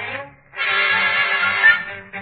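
Dance orchestra playing a Christmas novelty song for children, heard through a narrow, muffled late-1930s radio recording. It dips briefly about a third of a second in, then comes back loud and full.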